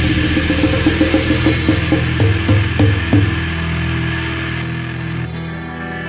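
Rock band music with guitar and drums. The drum hits stop about three seconds in and sustained notes ring on, as the track winds down to its end.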